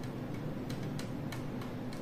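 Faint, irregular light clicks, about two or three a second, from a loose part knocking about inside a SANSI 36W LED grow lamp as it is held and moved.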